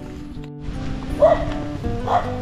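Background music with sustained notes, and a dog barking twice in the second half.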